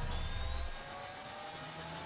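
Sound-effect riser in an animated intro: several tones glide slowly upward over a low rumble that drops away under a second in, building toward a hit.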